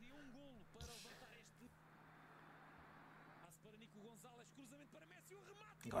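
Very faint Portuguese football TV commentary from a match broadcast played at low volume, with a faint haze of stadium crowd noise under it about a second in.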